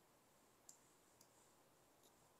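Near silence with two faint computer-mouse clicks about half a second apart.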